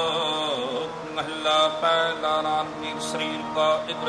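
Sikh kirtan: a male voice ends a sung line in the first second, then harmonium holds steady chords while tabla plays a few scattered strokes.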